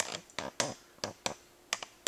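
A string of light, irregular clicks and taps, about eight in two seconds.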